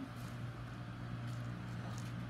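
Steady low hum under faint room noise.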